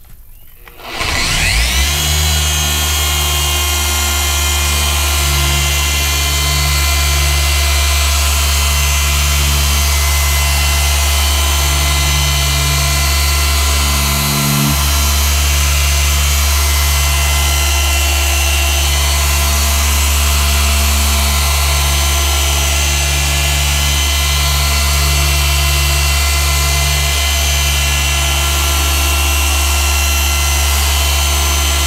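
Rupes Bigfoot dual-action polisher starting about a second in, winding up quickly, then running steadily as it cuts the clear coat with compound. It falters briefly near the middle, then runs on.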